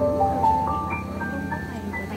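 Live band playing the slow instrumental introduction to a ballad: a melody of single held notes stepping upward over a low sustained bass note.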